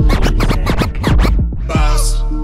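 Hip hop beat with heavy bass and a fast run of turntable scratches, quick rising and falling swipes, in a gap between rapped lines of a slowed remix.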